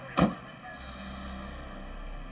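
A single sharp thump shortly after the start, followed by a steady low hum.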